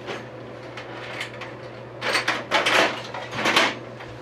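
Small hand tools clattering and rattling as they are rummaged through to pick out a screwdriver, in a run of noisy bursts starting about halfway through.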